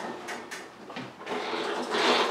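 Husqvarna hydrostatic lawn tractor pushed by hand over a concrete floor. The tyres roll with a few light clicks and knocks, and the noise grows louder about halfway through. The transmission freewheels with no transmission noise, because its bypass pin is pulled.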